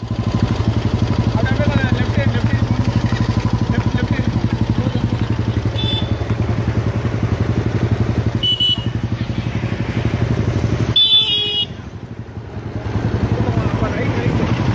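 Motorcycle engine running steadily close by while riding, with three short horn toots, the loudest about eleven seconds in. Just after it the engine drops to a quieter, lower hum for about a second, then picks up again.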